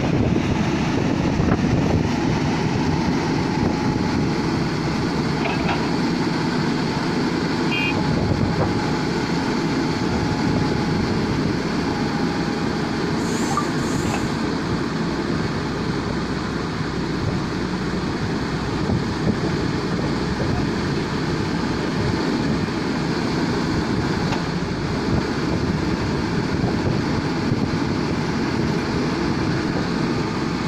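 Diesel engine of a JCB tracked excavator running steadily close by.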